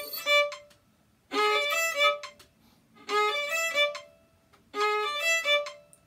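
Violin bowing the same short run of four sixteenth notes three times, each about a second long with a pause between: a passage being practised in one-beat chunks.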